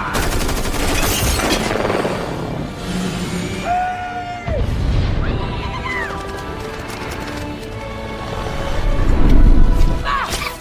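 Film action soundtrack: orchestral score under rapid gunfire in the first couple of seconds, shrill gliding screeches of flying banshee creatures around four and six seconds in, and a heavy boom near the end.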